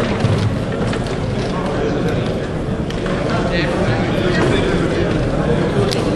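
Indistinct chatter of many voices in a sports hall, a steady murmur with no single clear speaker.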